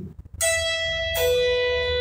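Electric guitar, a Les Paul-style solid-body, playing two single notes of a B-minor pentatonic lick: an E, then just over a second in a lower B that rings on steadily.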